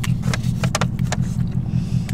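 Steady low hum of a car idling, heard from inside the cabin, with several short clicks and taps as a plastic drink cup with a straw is handled and lifted to sip.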